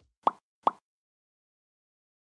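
Two short, bright pop sound effects in quick succession, a little under half a second apart, the kind edited in as pictures pop onto the screen.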